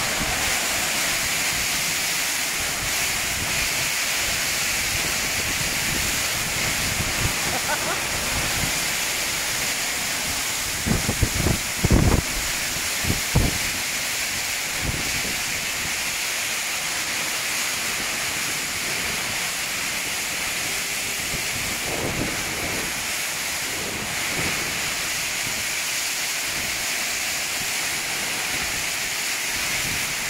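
Typhoon wind and heavy wind-driven rain: a steady rushing hiss. Several short gusts buffet the microphone between about eleven and fourteen seconds in.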